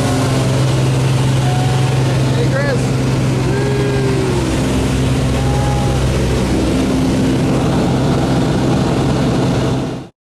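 Steady drone of a small propeller aircraft's engine heard from inside the cabin, with faint voices under it. The sound cuts off suddenly at the very end.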